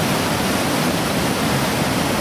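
Pistyll Rhaeadr waterfall: a tall, steady torrent of falling water rushing and splashing loudly without a break.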